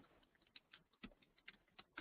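Near silence with faint, irregular clicking of computer keys.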